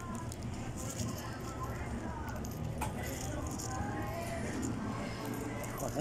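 Faint background voices over a steady low hum, with a single sharp click about three seconds in.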